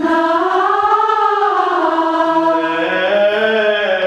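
A large mixed choir singing one long held phrase that swells slowly up in pitch and falls back; a lower line joins about halfway.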